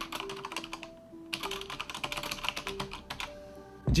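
Computer keyboard typing: quick runs of keystroke clicks broken by short pauses about a second in and near the end, over soft background music.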